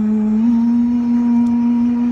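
Live busking music from a keyboard, electric bass and vocal duo. A single long held note steps slightly higher about half a second in and holds.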